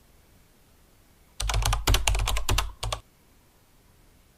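About a dozen sharp clicks in quick succession, starting about a second and a half in and lasting about a second and a half.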